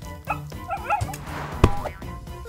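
A cartoon puppy yips and whimpers in a few short pitched yelps over light background music. A single sharp knock comes a little past halfway.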